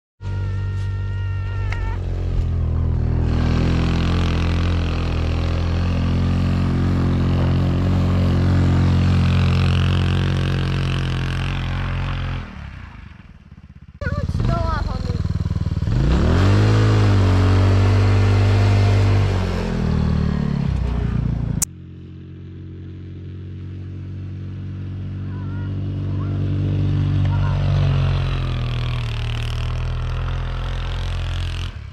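Engine of a Polaris Hammerhead GTS 150 go-kart, a small 150cc single-cylinder, running across several cuts. In the middle stretch it revs up and down repeatedly while the kart sits buried in deep snow.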